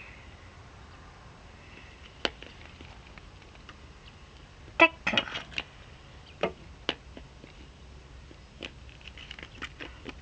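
Scattered light clicks and taps of plastic toy horse figurines being handled and set down on a wooden plank, over a faint steady hiss.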